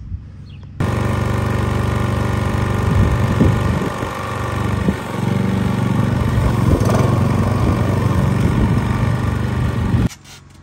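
Walk-behind petrol lawn mower running while it cuts long grass, a steady engine note that comes in suddenly about a second in and dips briefly twice, around four and five seconds in.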